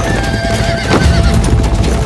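A group of horses galloping, with drumming hoofbeats and horses neighing. Soundtrack music with long held notes plays underneath.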